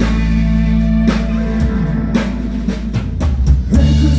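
A live rock band playing loudly: a drum kit, bass guitar, electric guitars and keytar. The drums come to the fore, with a quick run of hits in the second half leading back into the full band.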